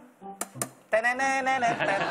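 The hinged lid of an electric rice cooker snaps shut, two sharp clicks of the latch about half a second in. About a second in, a man starts singing long held notes like a mock fanfare.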